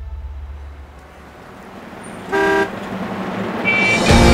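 A vehicle horn toots once, briefly, about two and a half seconds in, over low street traffic noise that grows louder near the end.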